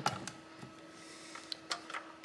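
Light plastic clicks and taps as a thin plastic drive-bay cover is handled against the front of a desktop PC case: one sharper click at the start, then a few faint taps, over a faint steady hum.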